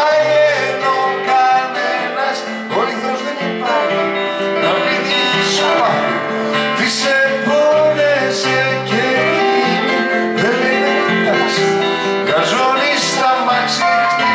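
Live song: acoustic guitar and a keyboard play chords, with a man's singing voice over them.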